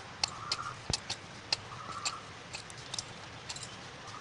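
Bangles on the wrist clicking and clinking irregularly, about a dozen sharp clicks, as a hand rubs ghee into flour in a plastic bowl for samosa dough, over a soft rustle of the flour.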